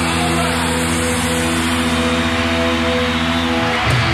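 The last chord of a hard-rock song held as a steady, unchanging drone of sustained distorted guitars, breaking off just before the end as something new comes in.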